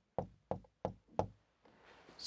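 Marker pen tapped sharply against a whiteboard four times, about three taps a second, dotting a nucleus into each drawn cell.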